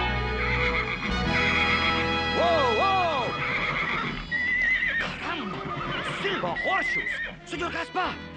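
A horse whinnying loudly several times, a pair of calls a couple of seconds in and more from about five seconds on, over background music.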